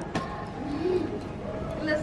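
Faint voices and low room murmur in a large hall, with a single sharp click shortly after the start and a voice calling out near the end.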